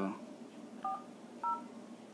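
YU Yuphoria smartphone's dialer keypad playing touch tones as a number is tapped in: two short two-note beeps about half a second apart, for the digits 4 and 0.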